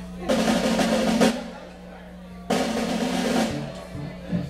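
Two short bursts from a band instrument, each about a second long, with a gap of about a second between them: a brief check between songs, not a full tune.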